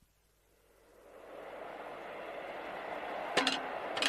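Radio-drama wind sound effect fading in from silence: a steady rushing of blowing wind, with a couple of sharp crunches near the end.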